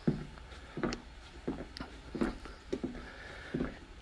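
Footsteps on the floor of a vintage wooden passenger coach, a short knock about every half to three-quarters of a second at walking pace, over a faint low steady hum.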